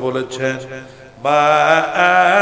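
A man's voice in melodic sermon recitation, intoned rather than spoken. It is quieter and broken up at first, then about a second in turns into a loud, drawn-out chanted line with a wavering pitch.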